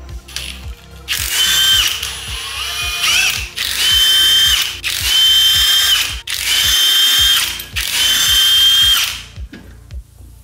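Cordless impact wrench spinning lug nuts off a car wheel, in about five loud bursts, each a steady whine with a hammering rattle, before stopping about a second before the end.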